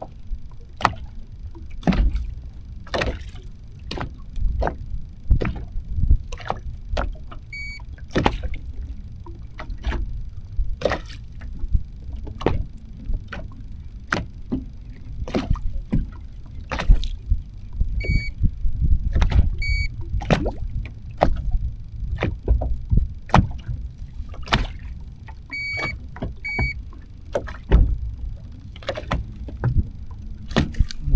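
Water slapping against a bass boat's hull in many irregular knocks over a low rumble. A handheld digital fish scale gives short electronic beeps, once and then in two pairs, while a crappie hangs from it being weighed.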